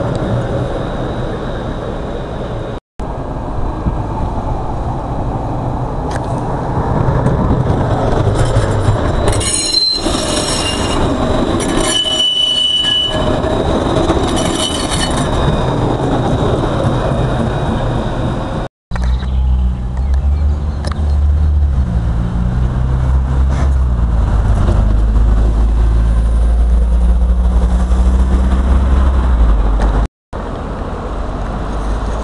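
Tram passing close by, its wheels rolling on the rails, with high squealing tones for several seconds in the middle of the pass. After a cut, road traffic with a strong low rumble.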